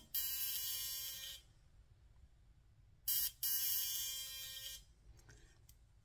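ProFacialWand high-frequency skincare wand with a neon-argon glass comb electrode on the scalp, giving a steady high electrical buzz. The buzz comes in two stretches, about a second and a half at first, then again about three seconds in for about two seconds, with quiet between.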